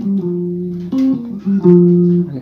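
Electric guitar playing a slow lead phrase in single notes, about five in two seconds, each ringing on and stepping up and down in pitch around the eighth and tenth frets.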